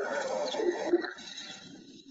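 Recorded mating calls of a pair of lions, played back over a video call: a drawn-out growling call that fades after about a second.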